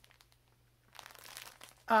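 Thin plastic bag crinkling as it is handled, starting about a second in and going on as a fast run of small crackles.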